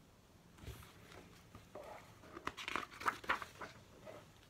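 Paper pages of a large hardcover picture book being turned and handled: a series of short rustles and crinkles, busiest in the second half.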